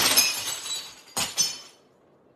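Glass shattering in a sudden crash, the pieces ringing and clinking as they fall, with a second smash a little over a second in. The sound cuts off abruptly just before the end.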